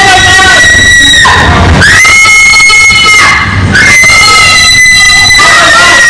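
A person screaming in long, high-pitched shrieks, three in a row with short breaks, very loud.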